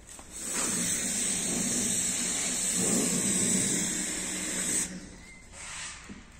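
A loud steady hiss that starts suddenly, runs for about four seconds and cuts off abruptly, followed by a brief second hiss near the end.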